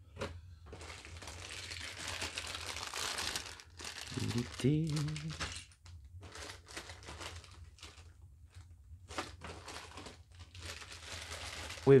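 Clear plastic parts bags crinkling and rustling as they are rummaged through and lifted out, in irregular bursts with short pauses, the longest in the first few seconds.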